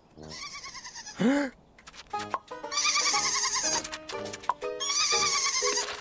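Cartoon sheep bleating in quavering, wavering cries: one at the start, a short rising-and-falling one just after a second in, and two longer ones about 3 and 5 seconds in. Underneath runs a light musical score of short stepped notes.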